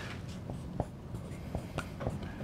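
A pen writing on a board: soft strokes with a few light taps, over a low, steady room noise.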